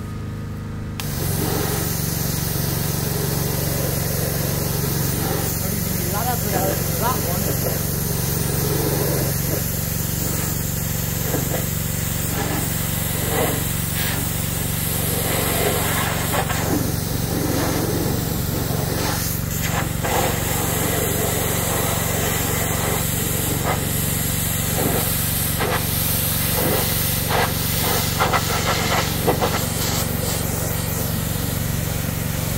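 Pressure washer lance spraying a jet of water onto metal road signs: a steady hiss starts about a second in and runs on over a steady low hum.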